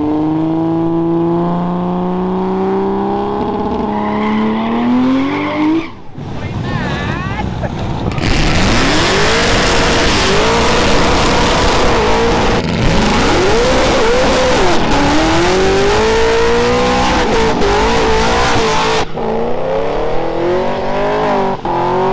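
Burnout cars on a skid pad. An engine revs with a slowly climbing pitch for about six seconds. Then, from about eight seconds in, spinning rear tyres give a loud, steady hiss over an engine held high and wavering, and near the end another engine revs.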